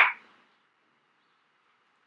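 Near silence: faint steady hiss of room tone after a word ends at the very start.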